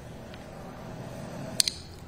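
Quiet outdoor ambience with a low steady hum, broken by one sharp double click about one and a half seconds in.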